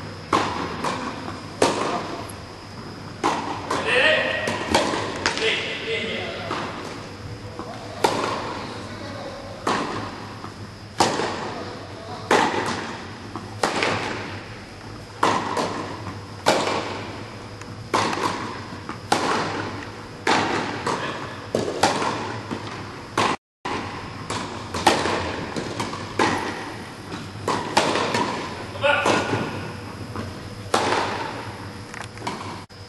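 Tennis balls struck by rackets in a rally on an indoor court, with sharp hits and bounces about once a second echoing around the hall. A voice is heard briefly in between.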